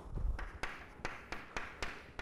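Chalk tapping and scraping on a blackboard as writing is started: a run of short, sharp ticks, about two or three a second, after a dull low thud at the start.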